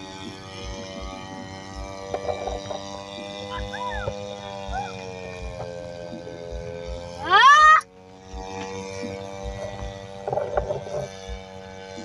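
The 411 two-stroke brush-cutter engine of a radio-controlled paramotor drones steadily in flight, its pitch sagging slightly and then rising again. About seven seconds in, a brief loud rising whoop cuts across it, and a few faint short chirps come a little earlier.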